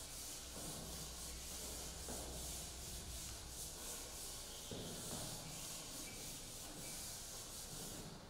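A chalkboard duster rubbing back and forth across a blackboard, wiping off chalk writing in a steady run of short strokes, a few a second.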